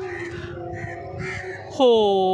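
Crows cawing, with one loud, drawn-out caw falling in pitch near the end. The woman takes the calling as the crows asking for water, their drinking bowl having run dry.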